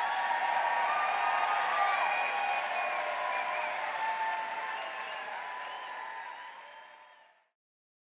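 Audience applauding, steady at first, then fading out about seven seconds in.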